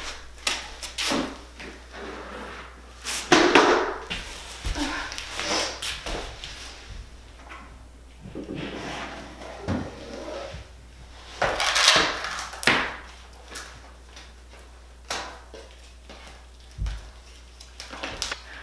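Toys and books being handled by a baby and an adult on a play mat: scattered knocks, clatters and rustles, loudest about three seconds in and again around twelve seconds.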